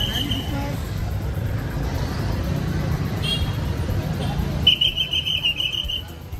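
Police pea whistle blown in trilling blasts: a short one at the start and a longer one about five seconds in, over constant street traffic and crowd rumble.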